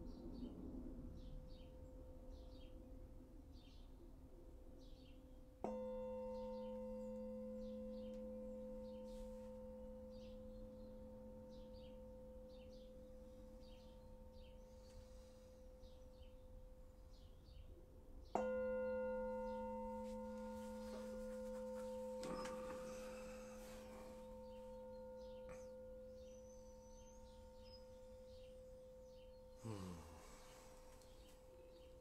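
A meditation bell struck twice, once about five seconds in and again about eighteen seconds in. Each strike rings on as a long, slowly fading low hum with a higher tone above it, marking the close of the silent meditation. Birds chirp faintly throughout.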